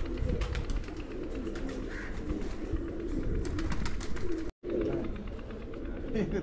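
Domestic pigeons cooing, a continuous chorus of low warbling coos with scattered faint clicks. The sound cuts out completely for a split second about four and a half seconds in.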